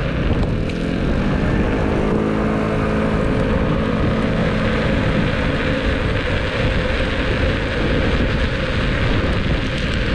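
Inmotion V10F electric unicycle riding on asphalt: heavy wind rumble on the microphone and tyre noise, with the hub motor's whine rising in pitch about a second in, holding, then fading out around halfway through.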